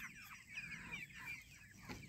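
A flock of white chickens calling quietly, many short overlapping chirps and clucks.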